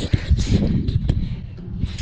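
Wind buffeting a handheld camera's microphone, a low rumbling noise, with handling bumps and a couple of short knocks, one near the start and one about a second in.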